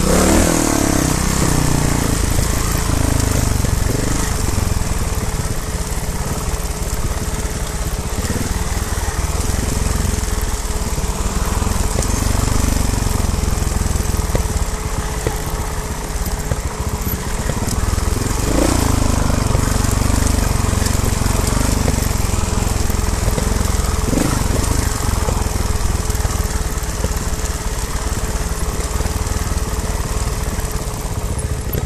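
Trials motorcycle engine running at low revs while riding a rough dirt trail, with heavy low rumble; the revs briefly rise twice in the second half.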